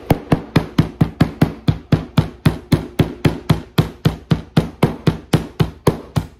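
Metal meat-tenderizer mallet pounding seasoned deer meat on a wooden cutting board: a steady run of sharp strikes, about four a second. The meat is being tenderized and the seasoning beaten in.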